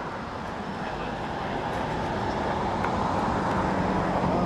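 Steady outdoor street noise that swells slowly, with faint chatter from a small group of people.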